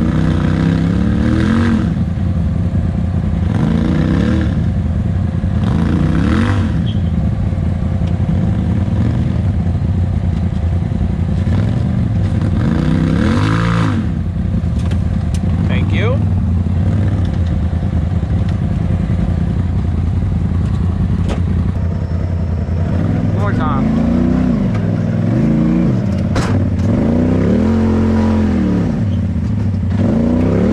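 Side-by-side UTV engines running, with repeated short revs that rise and fall in pitch, the throttle blips of crawling over rock ledges. A few sharp knocks come in between, around the middle and later on.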